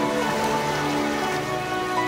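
Fantasy orchestral film-style music in a soft passage of held chords that shift twice, with a steady patter of rain layered beneath it.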